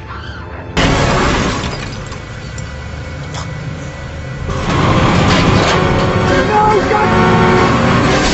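Film soundtrack: music mixed with a sudden loud crash of shattering glass about a second in, then a louder stretch of music and action noise from about halfway through.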